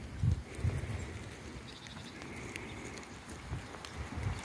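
Footsteps through grass, with a few soft low thuds, over faint outdoor ambience.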